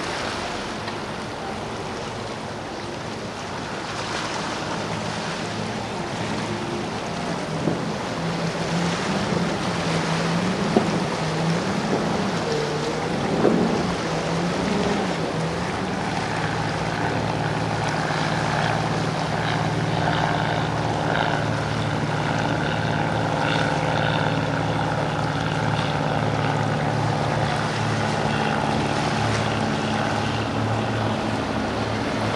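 Outboard engines of powerboats running through an inlet over surf, with waves and wind. The engine pitch wavers up and down in the first half, then settles into a steady drone from about halfway through.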